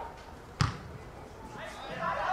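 A single sharp thud of a football being kicked, about half a second in, with distant voices from the pitch and sideline around it and picking up near the end.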